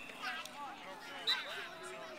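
Distant voices of children and adults calling out across a playing field, scattered and overlapping.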